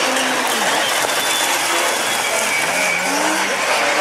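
Several rallycross cars racing past at full throttle, their engines revving, with pitches rising and falling as they change gear and overlap.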